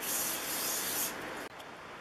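Aerosol can of Remington Rem Oil spraying through its extension straw: one hiss lasting about a second, then fainter before it stops.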